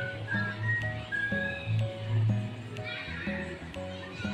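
Background music with a steady beat, a bass line and a higher melody of held notes, with a few faint clicks.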